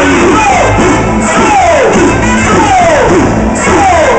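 Loud amplified festival band music for the dance of the giglio, with a steady low bass and a run of repeated falling pitch slides, over crowd noise.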